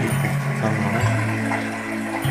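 A relaxing nature track of running water with soft, sustained musical notes, played through a small 2.1 multimedia speaker set with a subwoofer.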